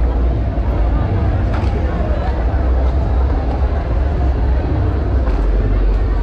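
Crowd of people talking and milling about in a busy street, a steady chatter with no single voice standing out, over a loud, constant deep rumble.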